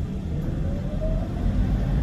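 Low rumble of a moving public-transport vehicle, heard from a seat inside, with a motor whine rising steadily in pitch through the first second or so as it speeds up.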